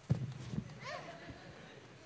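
Footsteps thudding on a wooden stage: two heavy thumps in the first half second, then lighter steps, with a brief faint child's voice about a second in.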